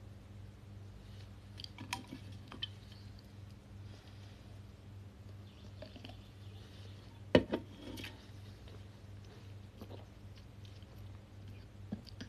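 Quiet drinking from an aluminium drink can: small handling clicks and mouth and swallowing sounds, with a sharp knock of the can a little after seven seconds in, over a faint steady low hum.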